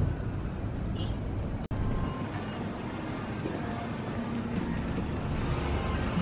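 Steady low outdoor rumble of a shopping-centre parking lot, in the manner of traffic and wind noise. It cuts out for an instant just under two seconds in.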